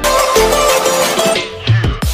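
Loud electronic intro music that starts abruptly, with a deep bass hit and falling sweeps near the end.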